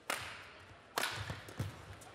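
Badminton racket hitting the shuttlecock twice: a hard overhead smash right at the start and a return about a second later, each a sharp crack that lingers briefly. Softer thuds of the players' feet on the court come between.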